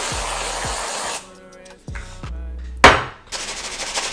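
Aerosol whipped-cream can hissing as it sprays for about a second. A sharp knock a little before three seconds in is the loudest sound, followed by a fainter steady hiss.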